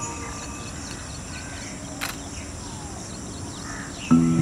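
Several birds calling faintly over a quiet outdoor background, with short chirps scattered through, and one sharp click about halfway through.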